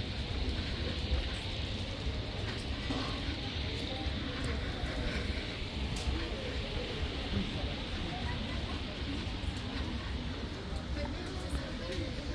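Busy shopping-street ambience: indistinct voices and background music over a steady low rumble.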